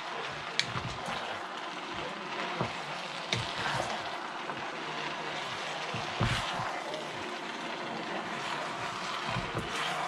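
Two wooden spatulas stirring and folding cooked black sticky rice through hot coconut-sugar syrup in a pan: wet scraping and squelching, with a few light knocks of wood on the pan, over a steady hiss.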